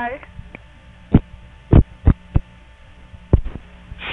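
Telephone-line recording on an answering-machine tape: a steady low hum with about six sharp clicks spread through the moment after a call ends, the line and machine clicking as the call disconnects.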